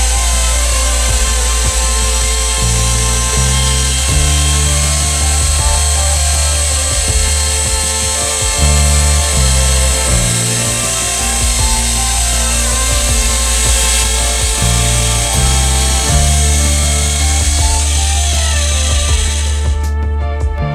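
Logosol Speed Saw E5 electric chainsaw on a chainsaw mill, carried by its automatic feed and ripping lengthwise through a dry oak log with water cooling on the chain. The steady cutting sound falls in pitch near the end and then stops. Background music with a changing bass line plays throughout.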